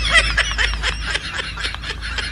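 High-pitched laughter in quick short bursts, growing a little fainter toward the end.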